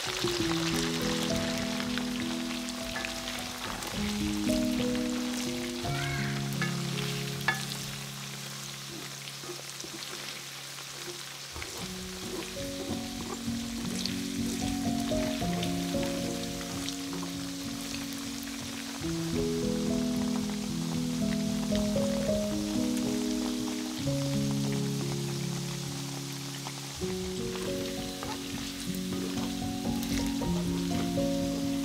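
Chicken pieces sizzling steadily in hot oil in a wok during their second fry, with a few sharp clicks, the loudest about seven and a half seconds in. Melodic background music plays throughout.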